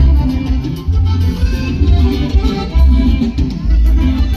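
Loud live regional Mexican dance music from a band, with a heavy pulsing bass beat under the melody instruments.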